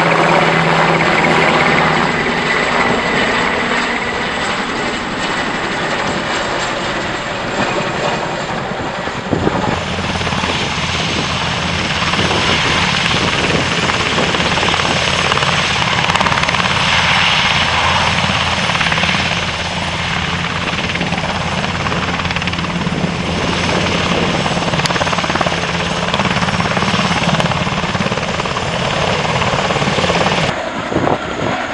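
Military helicopters running loudly: first a Boeing CH-47 Chinook's tandem rotors in flight, then, from about ten seconds in, a Chinook and a Cougar helicopter hovering low together, a steady rotor and engine noise that carries on to the end.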